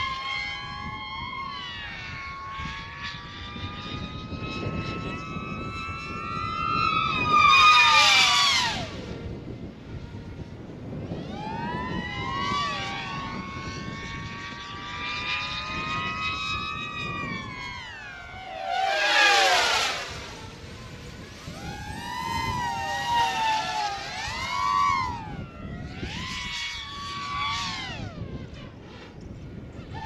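DJI FPV drone on Master Airscrew Ludicrous propellers flying, its motors giving a high, wailing whine that keeps rising and falling in pitch as it throttles up and down. It is loudest about eight seconds in and again near nineteen seconds in, where the pitch drops steeply as it passes.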